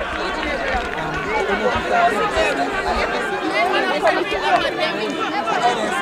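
Several people's voices talking over one another in steady, overlapping chatter, as from spectators grouped near the microphone.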